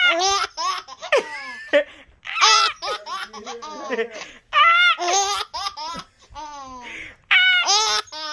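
Infant laughing in repeated short bursts of high-pitched laughter, each burst falling in pitch.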